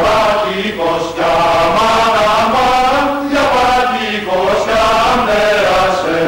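Mixed choir of men and women singing in harmony, holding sustained chords in phrases separated by short breaks.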